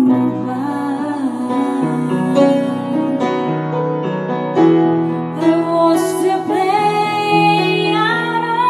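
A woman singing with upright piano accompaniment, the piano holding sustained chords under her voice. Her voice rises to higher, held notes near the end.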